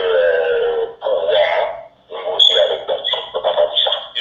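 A man speaking in short phrases, the voice thin and muffled with nothing above the upper midrange, with a faint steady high whine under it in the second half.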